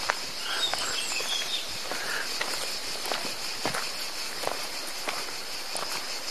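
Footsteps of people walking, irregular short steps, over a steady high-pitched insect sound.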